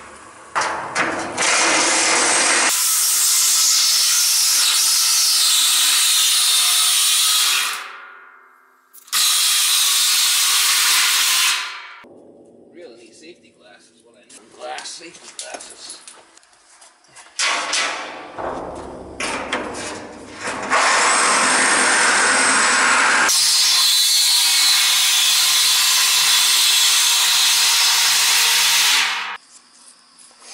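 Reciprocating saw with a metal-cutting blade sawing through the steel shell of a heating-oil tank. It runs in several stretches, from a couple of seconds up to about eight seconds long, and stops in between.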